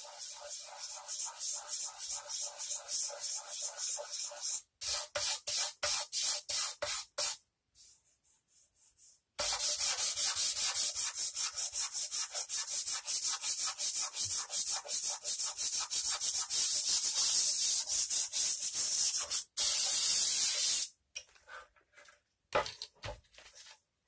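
Sandpaper rubbed quickly back and forth by hand on a filler-patched electric guitar body, a fast rasping scrape of many strokes a second. There is a pause of about two seconds a third of the way in, then a longer unbroken spell of sanding that stops shortly before the end.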